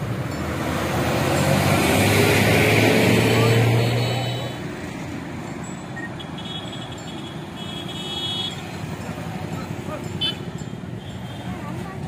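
Road traffic: a motor vehicle's engine runs loud and close for the first four seconds or so, then drops away to quieter street noise with faint voices.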